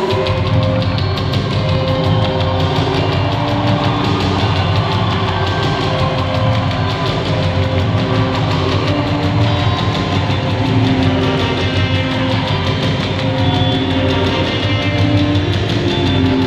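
Rock band playing live through a concert PA: drum kit, electric guitars, bass and keyboards, loud and steady, with the bass and drums coming in at the very start.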